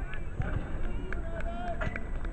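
Distant voices of players and spectators calling out during a football match, scattered short shouts rather than close speech.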